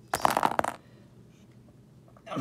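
Small plastic action-figure accessories, skewers with moulded pieces on them, rattling and clicking together in a hand in a quick burst during the first second.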